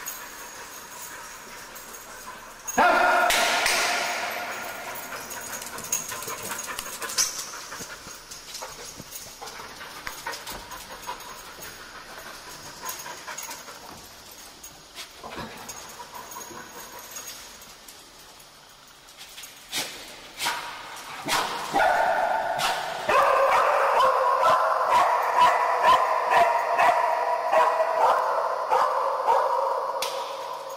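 A sniffer dog barking and whining, with a sudden loud bark about three seconds in and a long, dense run of barks and whines over the last seven seconds.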